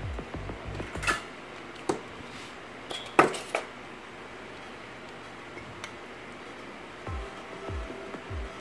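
A glass measuring cup clinks lightly against a stainless steel mixing bowl a few times, at about one, two and three seconds in, as vegetable oil is poured in over the sugar. Soft background music plays underneath.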